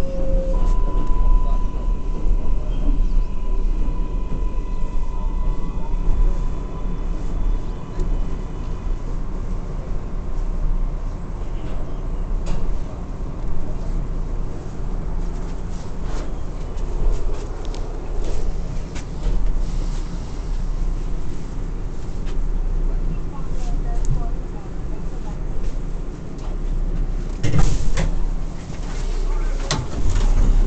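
Interior running noise of an R188 New York City subway car: a steady low rumble of the wheels on the rails, with a thin electric whine for the first several seconds that then fades. Scattered rail clicks are heard, and a louder clatter comes near the end.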